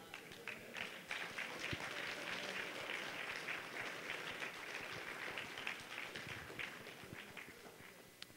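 Audience applauding in a lecture hall, building over the first second, then thinning out and dying away near the end.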